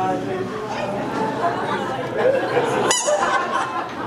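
Several voices talking over one another, from the performers and the audience, with one sharp knock about three seconds in.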